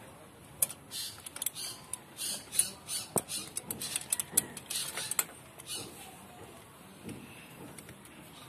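Hand tool clicking and scraping against metal while working on a motorcycle's spark plug: irregular sharp clicks, thinning out after about six seconds.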